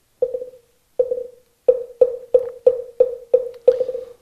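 Moktak (Korean Buddhist wooden fish) struck about eleven times. The knocks are short and hollow, each ringing briefly at one pitch, and they start slow and speed up steadily: the accelerating roll that opens a chanted mantra.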